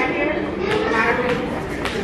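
A person's voice making a drawn-out, wordless sound, with a few sharp clicks.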